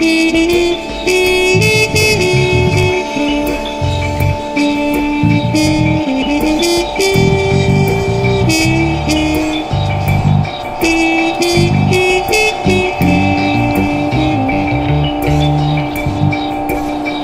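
Live minimal jazz-fusion music: a trumpet holding long notes that step in pitch over electric bass lines, with a steady electronic drone and repeated short electronic clicks.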